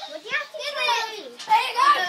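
Children's voices, high-pitched and excited: shouting and squealing at play.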